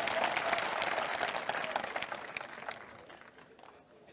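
Audience clapping, a dense patter of many hands that tails off and dies away about three seconds in.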